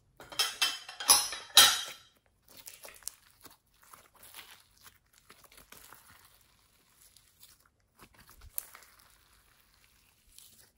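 Glossy gold-glitter slime being squeezed and stretched by hand, giving sticky crackles and pops. The loudest pops come in a quick cluster in the first two seconds, followed by softer scattered crackles and another short burst near the end.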